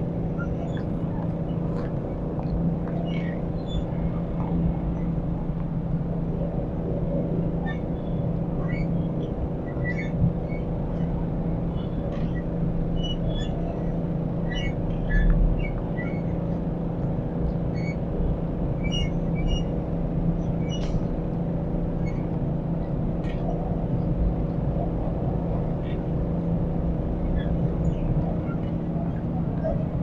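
Steady drone of city traffic, with short high chirps scattered through it and a brief low swell about halfway.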